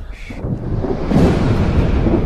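A storm sound effect: low rumbling wind and thunder that swells about half a second in and stays loud, after a short higher sound at the very start.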